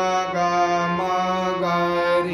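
Harmonium playing a Raag Khamaj melody: a run of held reed notes, moving to a new note about every half second, over a steady low drone.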